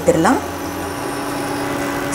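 A woman's voice trails off in the first half-second, leaving a steady, even hum with faint whining tones underneath.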